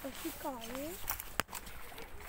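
Faint talking, with a single sharp click a little past the middle.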